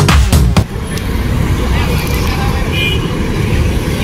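Dance music with a heavy beat cuts off about half a second in, giving way to busy street traffic: motorbike and car engines running, with one brief high beep near the middle.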